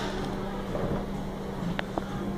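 Steady low hum of room ventilation, with a single faint click near the end.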